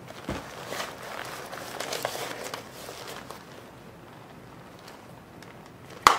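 Rustling of a leather jacket and light knocks of handling for about three seconds, then only faint background noise.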